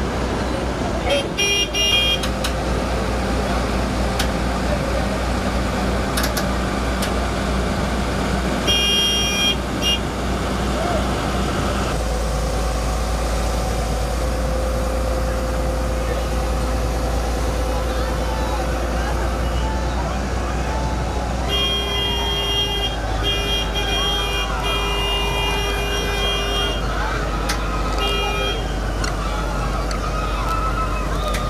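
Excavator's diesel engine running steadily under load as it lifts and swings a heavy load, with a high horn sounding in short toots a few times, most of them in a broken run in the second half. Crowd voices chatter around it.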